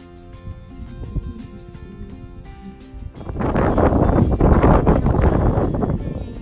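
Background music with sustained notes. About three seconds in, loud wind buffeting on the microphone rises over it and lasts to the end.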